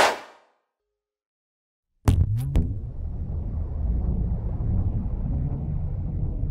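Outro animation sound effects: a whoosh that dies away in half a second, then silence, then about two seconds in three sharp hits followed by a steady low rumble.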